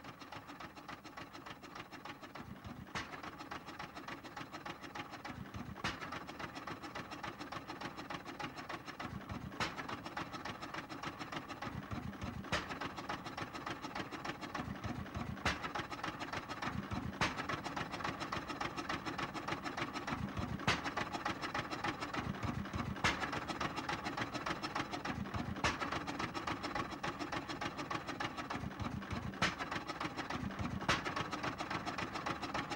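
Electronic DJ mix with a dense, fast mechanical-sounding pulse and a sharper accent every two to three seconds, slowly growing louder.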